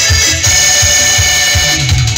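Loud live dance music from a keyboard band: sustained keyboard tones over a steady drum beat, with a deep bass swelling in near the end.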